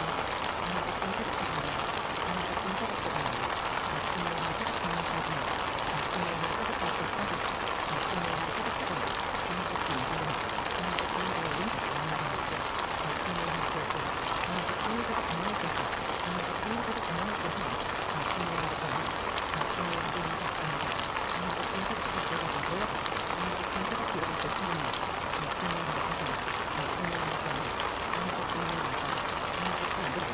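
Subliminal audio track: a steady water-like rushing noise with faint, unintelligible layered voices murmuring beneath it, the masked affirmations such tracks carry.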